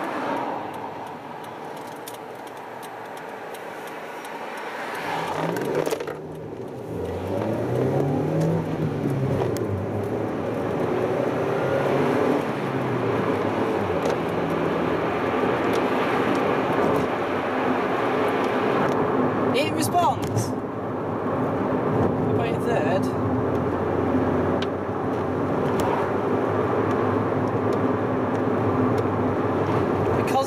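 Toyota Yaris 1.3 VVT-i four-cylinder engine with a sports exhaust, heard from inside the cabin. About five seconds in, the engine note gets louder and rises in pitch, then drops back as the car pulls away and changes gear. It then settles into a steady cruise with road noise.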